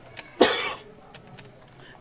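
A man coughs once, sharply, about half a second in.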